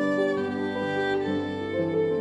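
Violin played with piano accompaniment: a bowed melody moving from note to note about every half second over sustained piano notes.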